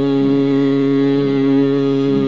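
Steady sruti drone holding its pitches unbroken, the tonic drone that accompanies a Carnatic vocal recital, left sounding on its own after the singing stops.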